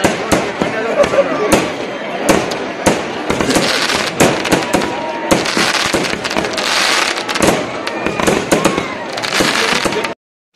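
Aerial fireworks bursting overhead: a rapid, irregular run of sharp bangs and crackles, several each second, with people's voices underneath.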